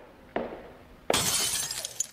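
A sharp hit, then about a second in a loud crash of shattering glass that dies away over most of a second.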